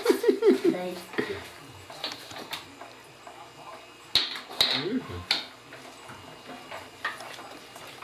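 Brief laughter, then quiet handling of cheese molds and curd cloth on a work table, with a few light clicks and knocks about four to five seconds in and soft voices.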